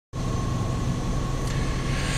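Steady noise inside a car cabin: the engine running, with the heater fan blowing.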